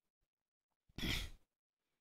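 A single short, audible breath from the narrator about a second in, between stretches of near silence.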